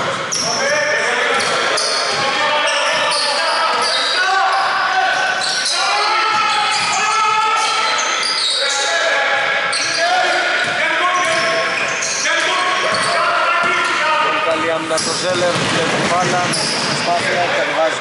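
Basketball being dribbled on a hardwood court during a game in a large indoor gym, with voices calling out over the play.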